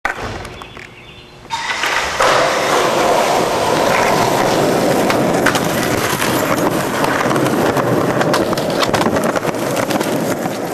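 Skateboard wheels rolling over a concrete sidewalk: a steady, loud rumble with frequent sharp ticks. It starts about one and a half seconds in and gets louder a moment later.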